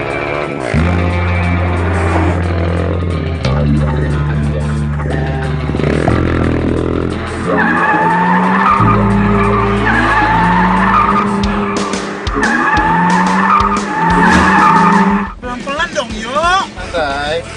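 Driving action music with a low, stepping bass line and a repeating tune from about eight seconds in, laid over car tyres squealing and engine noise as a sedan drifts.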